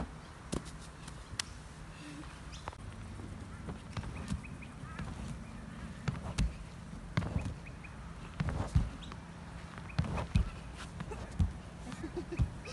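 Dull thuds of a body landing on an inflatable air track, several irregular impacts, the loudest falling in the second half.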